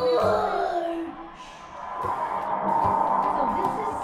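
Indistinct voices mixed with music.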